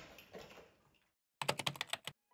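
A quick run of about eight sharp clicks, like keyboard typing, comes in after a moment of silence and stops abruptly.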